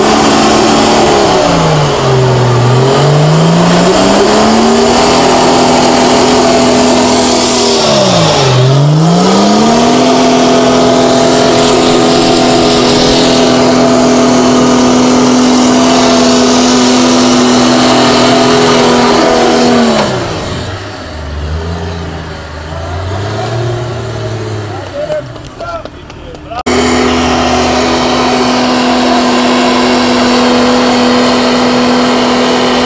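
Turbo diesel engine of a 1964 Unimog working hard at high revs as the truck climbs a steep, muddy slope. The revs dip and recover twice in the first ten seconds and then hold steady, drop to a quieter, uneven running for several seconds, and return abruptly to high revs near the end.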